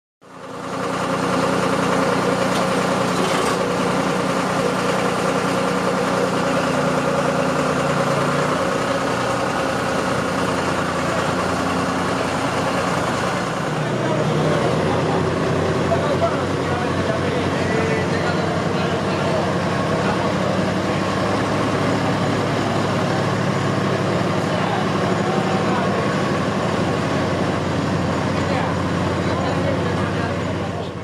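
Tractor engines idling steadily, with people talking over them. The engine note changes about halfway through.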